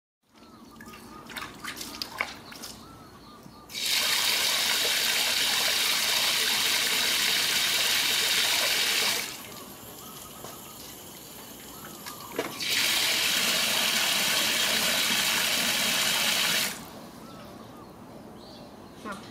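Water from an outdoor wall tap pouring and splashing into a metal basin already partly full of water. The flow starts about four seconds in, stops after about five seconds, then runs again for about four seconds near the end, with a few faint clicks before it.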